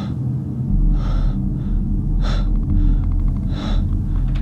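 A young man breathing loudly in his sleep: three heavy, breathy gasps roughly a second and a quarter apart, over a low steady drone that deepens about a second in.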